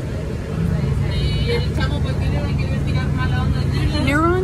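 City bus heard from inside the cabin: continuous low road rumble, joined about half a second in by a steady low motor hum as the sound gets louder. Faint voices sit in the background.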